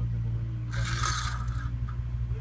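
A scrape lasting about a second, starting a little under a second in, over a steady low hum.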